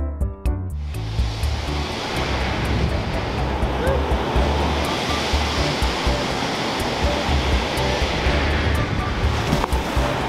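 Waves from the Surf Lakes plunger wave pool breaking and washing in as whitewater, a steady rushing that starts about a second in, under background music with a bass line and a steady beat.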